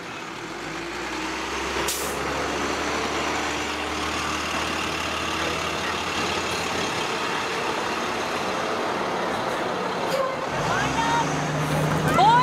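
School bus engine running steadily, with a short sharp hiss of compressed air about two seconds in. Voices come in near the end.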